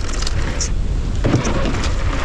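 Mountain bike running fast down a dry dirt trail: steady wind rush on the helmet camera's microphone with the low rumble of knobby tyres on hardpack, and a few short clicks and rattles from the bike over bumps.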